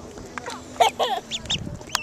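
Yellow duckling peeping close to the microphone: a quick run of short, high, falling calls about a second in. There is a sharp knock near the end.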